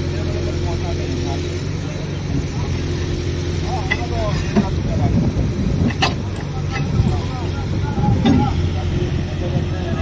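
A heavy diesel engine running steadily, with men's voices talking over it and a few sharp metallic clanks about halfway through.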